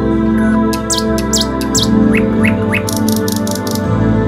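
Small birds chirping over soft, steady new-age background music: a few quick high falling chirps, then three short rising notes, then a fast run of high ticks near the end.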